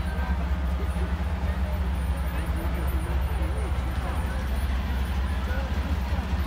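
Heavy vehicle engines running with a steady low rumble, under faint voices of people talking in a crowd.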